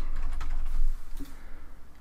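Computer keyboard typing: a quick run of keystrokes in the first second, thinning to a few scattered ones.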